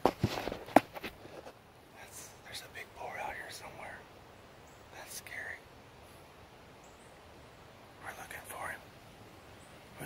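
A few sharp knocks and rustles in the first second and a half as the phone is handled, then a person whispering in three short stretches.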